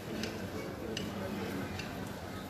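Three faint, sharp clicks at even spacing, about one every three-quarters of a second, over a low murmur of voices.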